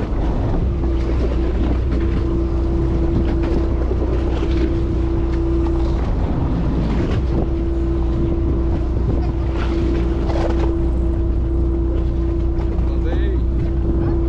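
A fishing boat's engine running steadily, a low drone with a constant hum over it that drops out briefly about halfway through, with wind buffeting the microphone.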